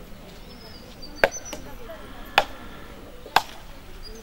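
Coconuts being cracked open against a stone: three sharp cracks about a second apart.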